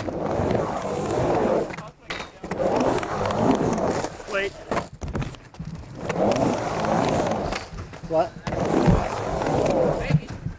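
Urethane skateboard wheels rolling back and forth across a wooden ramp, the whir swelling and fading with each pass. Several sharp clacks of the board against the ramp are heard.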